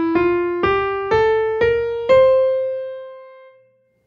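Piano playing the top of an ascending C Mixolydian scale, one note about every half second (F, G, A, B-flat, the lowered seventh), ending on the high C, which is held and fades away.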